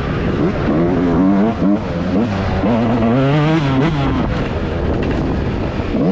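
Yamaha YZ125 single-cylinder two-stroke motocross engine ridden hard, its pitch rising and falling again and again as the throttle is worked through the turns, with one longer climb near the middle before it drops off.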